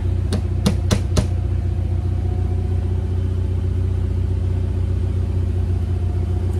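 Onan generator in a GMC motorhome running steadily at constant speed under load, a low even drone. A few sharp taps come in the first second or so.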